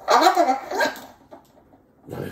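A talking tape pulled through the fingers, its ridged grooves read like a record groove and amplified by a paper cup, giving out a short voice-like phrase of a few syllables that lasts about a second.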